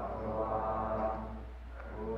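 Group of monks chanting Pali in unison, voices held on long steady notes, thinning briefly near the end as for a breath before going on. A low steady hum lies underneath.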